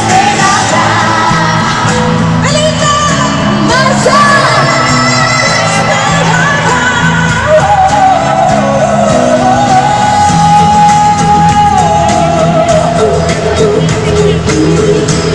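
Live pop song played by a band with women singing, loud and echoing as in an arena, with shouts and yells over it. A long held sung note comes about two-thirds of the way through.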